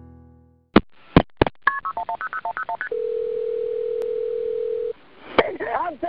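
Telephone line of a recorded 911 call: three sharp clicks, a quick run of about ten touch-tone keypad beeps, then a steady ringing tone for about two seconds. After another click the call is answered and a voice begins near the end.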